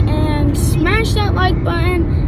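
Steady low road rumble inside a car's cabin while the car is driven, with a child's voice talking over it in short bursts.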